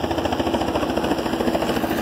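Steady, rapidly pulsing drone of a running engine or motor.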